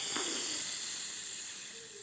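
A high hiss that starts suddenly and slowly fades away.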